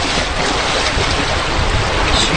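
Steady rushing noise of a flowing creek.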